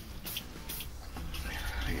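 A man's voice speaking a couple of short words, with a few light clicks in the first second.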